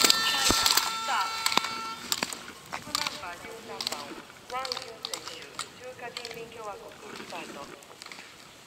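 Sharp clacks of slalom gate poles being struck by a racer, mixed with shouts and cheers from spectators along the course. There are a dozen or so separate clacks, and the sound grows fainter toward the end.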